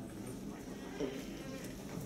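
Lecture-hall room noise: a low steady hum with faint, indistinct voices, and one short voice-like sound about a second in.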